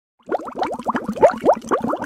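Water boiling hard in a steel saucepan, a quick, busy run of bubbles popping that starts about a quarter second in.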